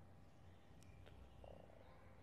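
Near silence: faint room tone with a couple of faint ticks in the middle.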